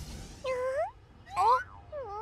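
A cartoon baby dinosaur's voice whimpering: two short cries, each rising in pitch, about half a second and a second and a half in.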